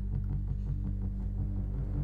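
Instrumental pop backing track in a break between sung lines: a deep, steady synth bass with little else above it.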